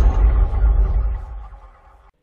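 The tail of an intro sound effect: a deep rumble under a wash of higher noise, fading away over about two seconds.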